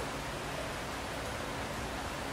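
Steady background hiss in a pause between words, even and unchanging, with no distinct sound events.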